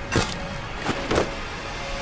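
Three short sharp knocks over a low rumbling background with a faint steady tone.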